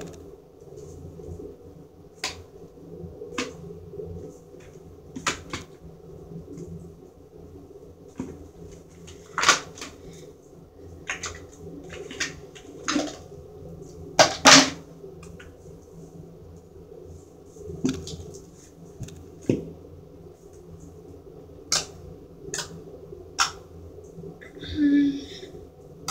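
Pink fluffy slime being poked and squeezed by hand: irregular sticky pops and crackles, roughly one every second or two, over a faint steady low hum.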